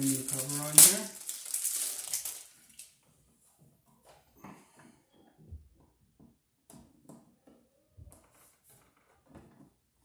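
An outlet cover plate is handled and set onto a duplex wall outlet with one sharp click, followed by rustling. A screwdriver then turns the plate's screw with faint scattered scrapes and ticks.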